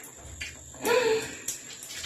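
A woman's short, appreciative 'mm' hum while tasting cake, about a second in, with a few faint clicks around it.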